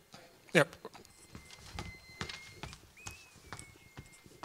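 Footsteps on a hard floor: irregular knocks a few times a second. A faint, steady high-pitched tone starts about a second in.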